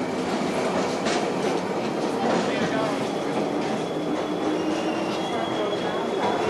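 Busy city-centre ambience: a steady mechanical rumble with crowd voices mixed in, and a thin, high, steady squeal in the second half.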